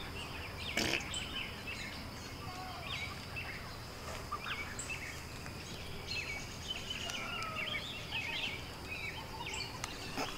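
Many short bird chirps and calls come and go over a steady high hum, with one sharp click just under a second in.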